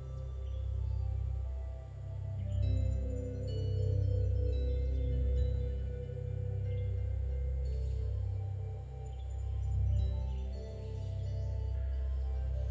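Slow ambient background music: long held tones over a low drone that swells and fades every two to three seconds.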